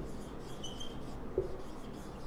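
Marker pen writing on a whiteboard, with short squeaks as the tip is drawn across the board and a light knock about one and a half seconds in.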